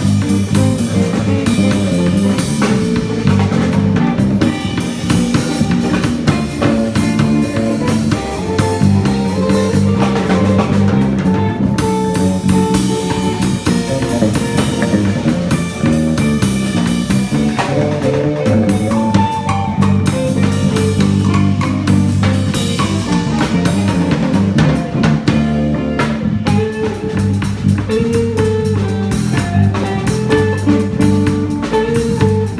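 A live guitar, bass and drums trio playing: hollow-body electric guitar, electric bass and drum kit. The bass line steps from note to note under the guitar, with drum and cymbal strokes throughout.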